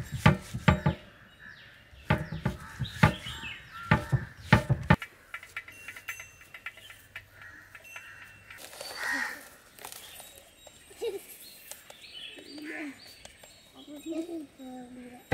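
Hands patting and handling food on a banana leaf: a quick run of sharp pats and knocks for about five seconds, then quieter handling with birds chirping in the background.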